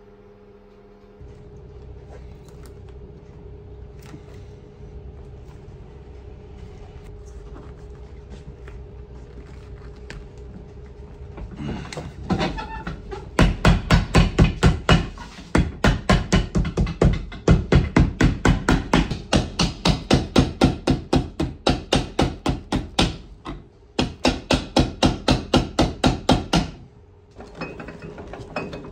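A hand hammer striking a leather outsole on a boot held on a metal last. The blows come in rapid runs of about four or five a second with short pauses between runs, pressing the freshly glued outsole onto the welt and midsole. The hammering starts about twelve seconds in, after a steady low hum.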